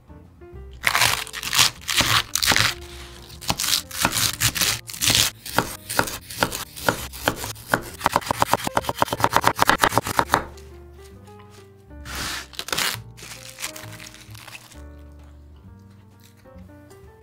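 Kitchen knife chopping carrot on a wooden cutting board: uneven cuts for several seconds, then fast, even chopping of several strokes a second that stops about ten seconds in. A brief noise follows around twelve seconds, with soft background music throughout.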